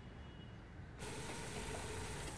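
Chai boiling over in a steel pot on a lit gas burner: a steady frothing hiss that cuts in suddenly about a second in, after a quiet first second.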